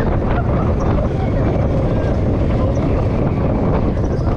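Roller coaster train running along its track, heard from on board: a steady rumble of the wheels, with wind buffeting the microphone.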